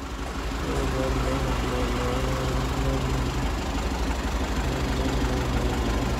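A vehicle engine idling steadily: a low rumble with an even hum over it.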